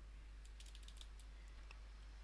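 Faint computer keyboard keystrokes: a short run of quick taps about half a second in, then a few scattered single clicks.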